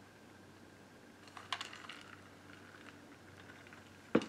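Quiet room tone with a short cluster of light clicks about a second and a half in, from a hard plastic tumbler being handled and set down.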